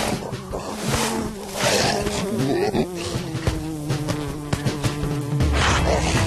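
Cartoon sound effect of a flying dung beetle's wings buzzing, the buzz wavering up and down in pitch, over background music.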